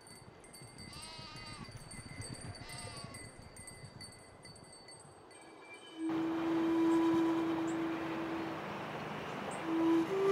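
A young animal held in a man's lap bleats twice, about one and three seconds in. From about six seconds a long held musical note begins, with flute music starting near the end.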